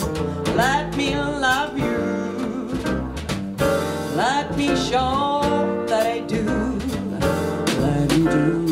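A live jazz quartet playing: double bass on low notes, drums with frequent cymbal and snare strokes, and electric piano, with a singer's voice gliding over them.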